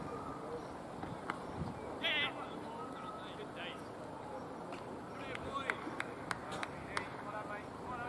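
Open-air cricket ground: a single sharp knock about a second in, typical of bat striking ball, then players' shouted calls while the batsmen run, with a few more sharp clicks later, over steady outdoor background noise.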